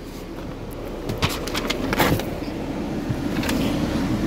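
A few sharp clicks and knocks of handling and movement as someone settles into a car's driver's seat, over the steady rush of the cabin air-conditioning fan.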